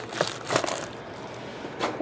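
Foil-wrapped trading card packs crinkling and tapping as a hand squares them into a stack on a table, a few short crinkles in the first second or so.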